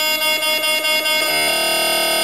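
Electronic noise from analog and electronic devices and effects units played live: a loud drone of steady, held electronic tones. About a second and a quarter in, it switches to a fast, buzzing pulse.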